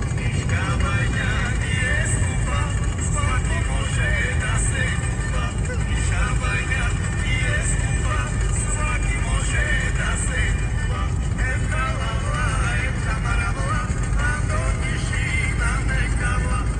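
Road and engine noise inside a car's cabin at motorway speed, a steady low rumble, with music and a voice playing over it.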